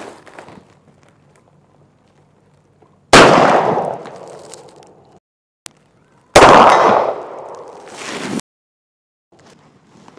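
Two revolver shots about three seconds apart. Each is a sharp, very loud crack followed by an echo that dies away over a couple of seconds.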